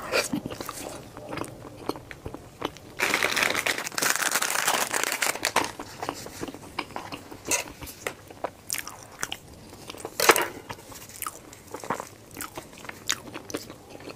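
Close-up eating sounds of a soft, chewy cocoa mochi with a warmed, runny chocolate filling: wet, sticky chewing with many small mouth clicks. The chewing is denser and louder from about three to five and a half seconds in, and there is one sharper click about ten seconds in.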